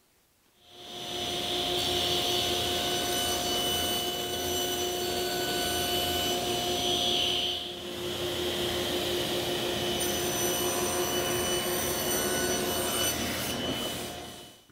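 Table saw running and cutting boards: a steady motor whine with the hiss of the blade in the wood. It dips briefly about halfway through, then runs on.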